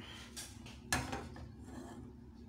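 A metal cooking pot set down on a gas stove's grate: a sharp clatter about a second in, with lighter scraping and knocking around it.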